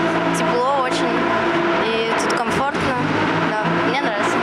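A girl speaking in an interview, her voice over a steady low hum.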